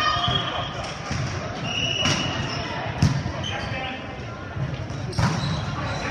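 Volleyball being struck during a rally on an indoor court: three sharp slaps, about two seconds in, three seconds in (the loudest) and just after five seconds in, echoing in a large gym, with players' voices throughout.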